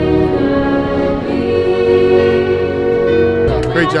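A woman's solo voice singing with an orchestra behind her, holding one long note through the middle. About three and a half seconds in it cuts to crowd chatter and a man's voice.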